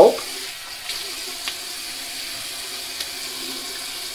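Water running steadily from a bathroom sink tap, with a few faint clicks at about one, one and a half and three seconds in.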